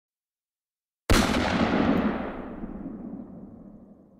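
A single loud bang about a second in, then a long tail that fades away over about three seconds. It is an intro sound effect laid under the title graphics.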